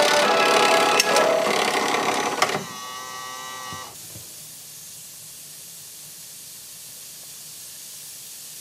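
Music plays for the first couple of seconds and ends on a held chord. From about halfway on, a soft steady fizzing hiss: a bath ball dissolving and bubbling in a small plastic tub of water.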